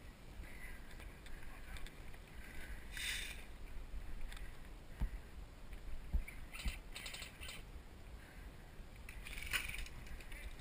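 Footsteps and rustling on dry debris and brush, with wind noise on a head-mounted camera: a few dull thumps near the middle and short hissing rustles at intervals.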